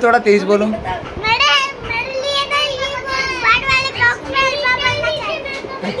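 Young children's high-pitched voices, talking and calling out as they play together.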